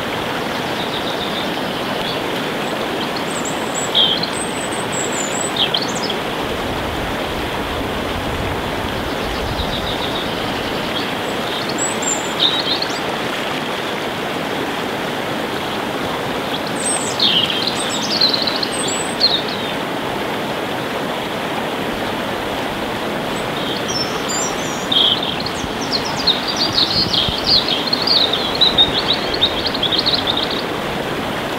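Steady rushing noise like running water, with small birds chirping several times over it and a busier run of chirps near the end.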